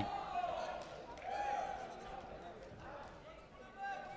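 Sports hall ambience: faint, distant voices calling out over a low murmur of the hall, loudest about a second in, with a few soft knocks.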